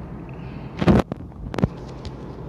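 Steady low road and engine rumble inside a moving car, with two sharp knocks of the phone being handled, one just under a second in and one about half a second later.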